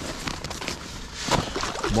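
Ice and slush scraping and sloshing in a freshly augered ice-fishing hole as a hand reaches down inside it to feel how thick the ice is, with a few sharp knocks, the loudest about halfway through.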